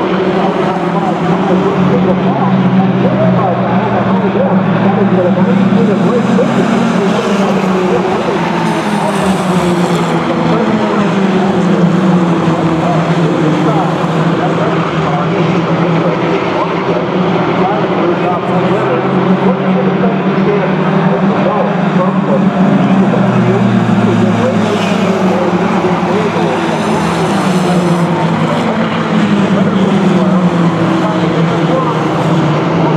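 A pack of mini stock race cars running together around a short oval, their engines rising and falling in pitch again and again as they accelerate down the straights and lift for the turns.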